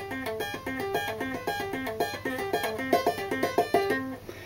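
Electric guitar played with two-hand tapping in a clean tone: a fast, even stream of single notes cycling through a rootless D minor seventh arpeggio shape, the tapped pattern repeating.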